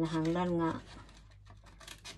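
A woman's voice holds a short wordless sound for under a second. Then comes the quieter snipping and rustle of scissors cutting through paper, with a sharp snip near the end.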